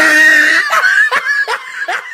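A person laughing: a high, held squeal in the first second, then a run of short, falling-pitched bursts of giggling.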